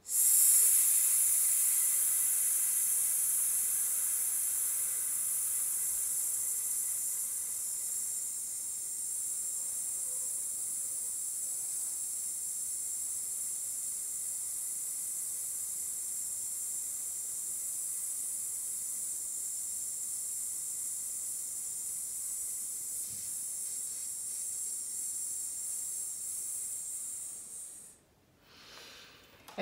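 A woman's voiceless 's' held as one long, steady hiss on a single breath for nearly half a minute, a sustained-fricative breath-support exercise. It is strongest in the first few seconds, eases a little, then holds level and stops suddenly near the end.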